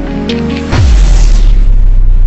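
Background music with held notes, cut about three-quarters of a second in by a loud, deep cinematic boom that drops in pitch and carries on as a steady low rumble, a logo-reveal sting.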